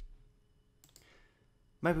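Computer keyboard typing trailing off at the start, then a single short click about a second in. A man's voice begins near the end.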